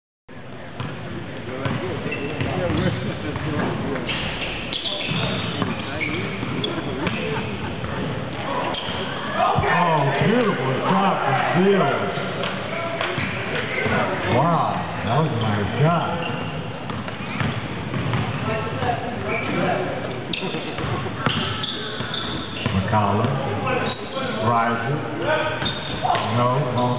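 Basketball dribbled and bouncing on a hardwood gym court, with voices of players and spectators carrying through the hall.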